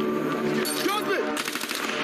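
Rapid burst of automatic rifle fire in a movie shootout, starting about a second and a half in, over a steady low background.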